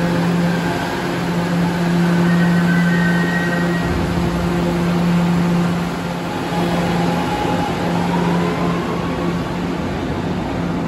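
Subway train running on the rails, a steady electrical hum under the rumble and hiss of wheels on track, with a faint whine rising about seven seconds in.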